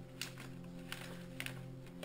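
Quiet background music with three light clicks as watercolour palettes are moved around on the table.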